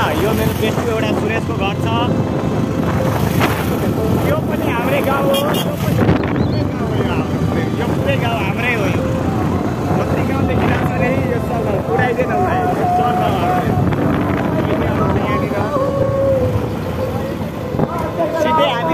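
Wind and road noise from riding on a small motorcycle, the phone's microphone buffeted by the moving air, with men's voices shouting and talking over it throughout.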